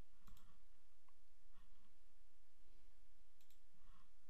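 Faint computer mouse clicks: one shortly after the start and a quick pair near the end, over a low steady hum. The clicks come as a toolbar button is pressed to turn on parameter tuning.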